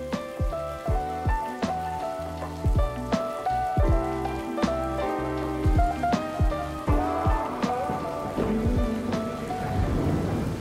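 Background music with held notes and a steady low beat, laid over the hiss of heavy rain falling on pavement and roads.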